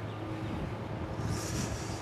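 Wind buffeting the camera microphone outdoors: a steady low rumble, with a brief higher hiss of a gust about a second and a half in.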